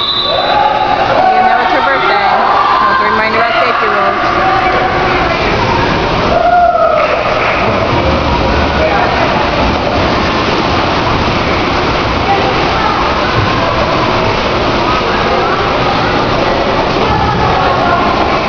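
Busy indoor swimming pool: indistinct voices echoing in the hall, with a steady wash of noise, likely splashing, that fills out from about seven seconds in.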